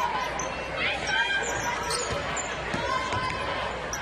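Court sounds of a women's college basketball game: a ball being dribbled on the hardwood and a few sneaker squeaks over the steady murmur of the arena crowd.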